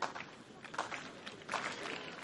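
Crowd noise in a tennis stadium between points: a low, even murmur from the stands with a few faint knocks or claps.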